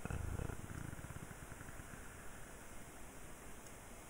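Steady hiss from the recording's noise floor, with a brief low, pulsing rumble in the first second or so.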